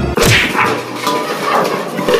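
A sudden sharp whip-like crack with a falling swish as a large metal basin is slammed down over a dog.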